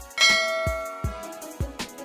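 Background music with a drum beat, with a loud bell-like chime that strikes about a quarter second in and rings away over about a second.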